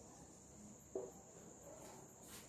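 Near silence: room tone with a faint, steady, high-pitched tone throughout, and one brief soft sound about a second in.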